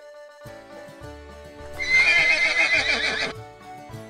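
A horse whinnying once, about two seconds in, for about a second and a half, with a wavering call that falls away at the end. Background music plays throughout.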